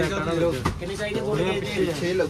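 Indistinct men's voices talking over one another in a small shop.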